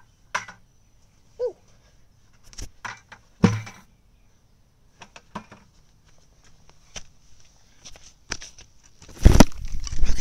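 Scattered faint knocks and clicks over a faint steady high tone, then loud rubbing and bumping from about nine seconds in as the phone camera is picked up off the grass and carried.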